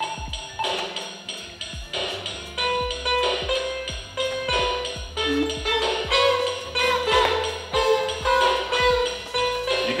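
Small electronic toy keyboard playing a built-in drum rhythm, with low kick-drum beats about twice a second and a tambourine-like jingle, set to a slowed tempo. A simple melody of short electronic notes joins in about two and a half seconds in.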